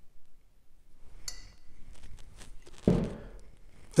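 A glass bottle clinks against china with a brief ringing about a second in, followed by faint handling ticks and a dull thump near three seconds as a bottle is set down on the cloth-covered table.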